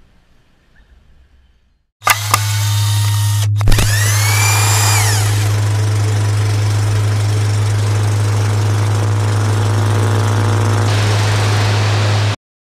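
Faint outdoor ambience, then about two seconds in a loud electronic glitch sound effect starts suddenly: a steady low electrical hum under hissing static, with clicks and a tone that rises and falls near its start.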